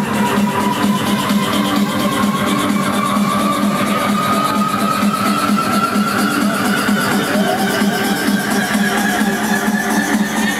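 Electronic dance music over a festival sound system in a build-up: a tone rises slowly and steadily in pitch through the passage over fast rattling percussion.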